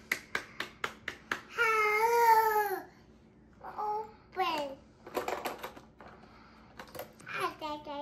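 A quick run of about seven hand claps, then a toddler babbling and squealing, with one long, wavering vocal sound about two seconds in and a falling one near the middle.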